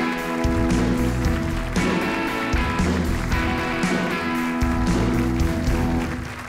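Live studio band playing an instrumental break with electric bass, keyboards, saxophone, electric guitar and drums, with sustained chords over a pulsing bass line.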